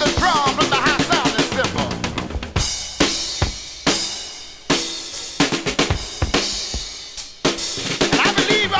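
Southern soul gospel band recording: the band plays for about two seconds, then drops to a drum break of separate drum kit hits and cymbal crashes that ring out between strokes, and the full band comes back in near the end.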